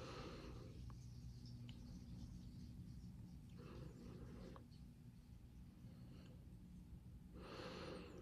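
Near silence: a low steady room hum with three faint breaths, each about a second long and roughly four seconds apart.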